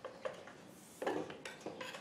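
Light clicks and knocks of a heavy 50 amp power cord and its plug being handled and tucked against the trailer's rear bumper and sewer-hose tube: a few separate clatters, the loudest about a second in.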